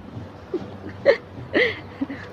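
Three short, startled vocal gasps from a person, the second the loudest, made while backing away from an angry cat.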